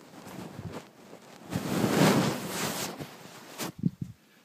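Handling noise of a camera being moved about with its lens covered: rustling and rubbing on the microphone that swells to a loud rush in the middle, then a few short knocks near the end.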